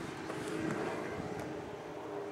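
Faint, steady low background rumble with a faint even hum.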